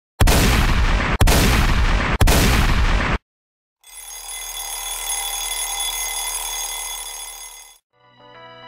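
Three loud, harsh bursts of noise, each about a second long with brief breaks between them. After a short silence comes a sustained ringing of many steady tones over a low hum, which fades out just before the end.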